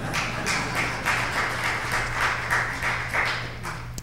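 Congregation applauding: many hands clapping in a steady patter that eases off slightly near the end.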